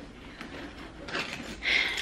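Hand rummaging in the side pocket of a backpack purse: faint rustling and handling noise, with a brief louder scrape near the end as car keys are pulled out.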